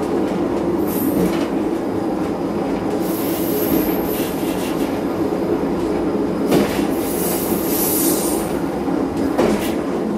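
Diesel train running along a branch line, heard from the driver's cab: a steady engine drone, with wheels squealing high on the curve about three seconds in and again around seven to eight seconds, and a sharp knock from the wheels over the track about six and a half seconds in.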